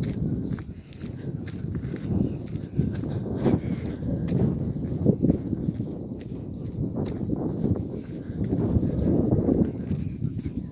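Irregular footsteps on a muddy, stony dirt track, over a low rumbling noise typical of wind on a phone microphone.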